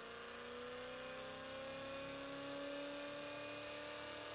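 Bedini SSG hard-drive rotor with neodymium magnets, pulsing its coils into a Slayer exciter coil: a steady electrical hum-whine that rises slowly in pitch as the rotor speeds up.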